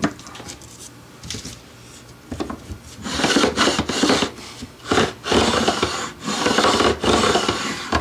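Fret end file held at 90 degrees in a wooden block, stroked lengthwise along the edge of a Squier Stratocaster fretboard to file the ends of newly installed frets flush. Light handling at first, then from about three seconds in, several long filing strokes one after another.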